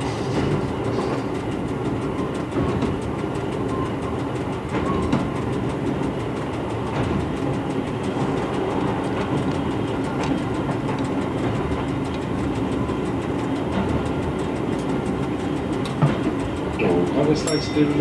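Rebuilt Y1 railcar's Volvo diesel engine running steadily under way, with wheel and rail noise, heard from inside the driver's cab.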